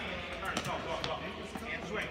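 Tennis balls bouncing on a hard court and being struck by rackets: several short, sharp knocks.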